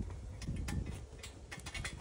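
Metal climbing tree stand clicking and ticking in a quick irregular scatter as a person shifts his weight and sets a foot onto the foot platform, over a low rumble of handling.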